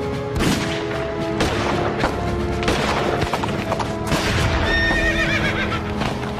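A horse whinnies about five seconds in, a high wavering call falling in pitch, among hoofbeats and sharp impacts of battle sound effects, over music with held notes.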